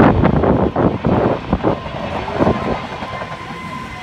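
Wind rumbling and buffeting on a phone microphone outdoors, easing after about two seconds, with a faint steady high tone in the second half.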